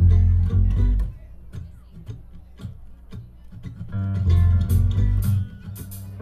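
Soundcheck noodling through the PA: an upright bass plucks loud low notes at the start and again about four seconds in, with scattered acoustic guitar strums and plucked notes between.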